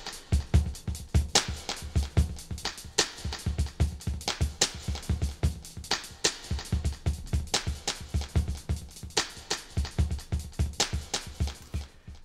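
Electronic drum loop (kick, snare and hi-hat) playing in a steady, even rhythm through a stereo digital delay, whose echoes repeat the hits as the delay's mix and feedback are turned up. It stops right at the end.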